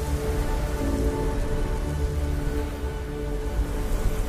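Ambient music with held tones under a steady rain-like hiss and crackle, a sound effect layered over the title animation, with a low rumble beneath.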